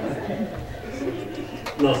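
A man's quiet, hesitant voice through a microphone during a pause. Fuller speech begins near the end as he starts his answer.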